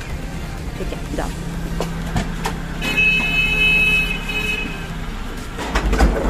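A vehicle horn sounds once and is held for about a second and a half, over a steady low engine hum and street noise.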